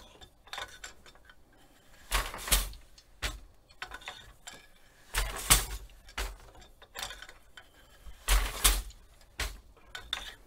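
Wooden loom beater knocking against the cloth as picks are woven, in pairs of knocks about every three seconds, with lighter clicks of the shuttle and shed changes between.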